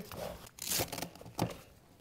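A strap being pulled and fastened inside a nylon tool bag. The fabric rustles, with a short rip-like rasp a little past half a second in and a few light clicks after it.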